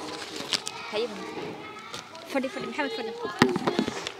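Young children's voices talking indistinctly, broken by several sharp taps or clicks, the loudest a little over three seconds in.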